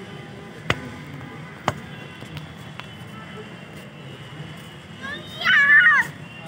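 A young child's short, high-pitched vocal call, wavering up and down, near the end; earlier, two sharp taps over a low steady background.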